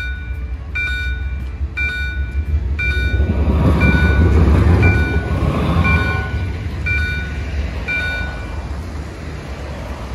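A large vehicle's reversing alarm beeping about once a second over the low rumble of its engine, which grows louder in the middle.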